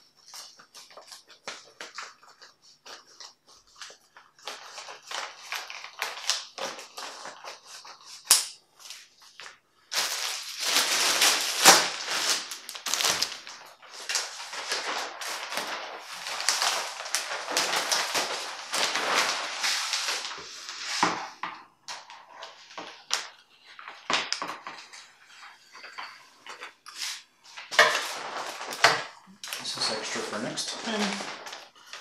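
Scissors snipping through thin plastic sheeting in a run of short clicks, then the plastic sheet crinkling and rustling loudly for about ten seconds as it is lifted and spread over a table, with scattered handling rustles and clicks near the end.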